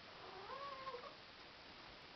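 A cat meowing once, faintly: a short call that rises and then wavers, lasting under a second.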